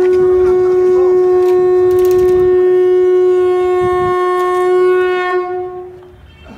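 Conch shell (shankha) blown in one long steady note, fading out near the end.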